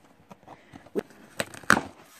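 A cardboard shipping box being handled and opened by hand: a few sharp knocks and scrapes of cardboard, the loudest near the end.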